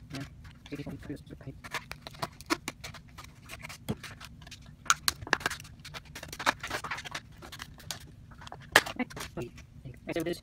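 Clear plastic packaging crackling and clicking as a mini tripod is unpacked by hand, with the sharpest clicks about five seconds in and near the end.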